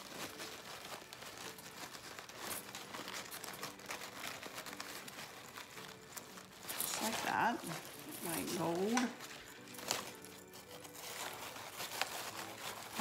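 Fabric ribbon rustling and crinkling in the hands as it is gathered, looped and pinched into a bow.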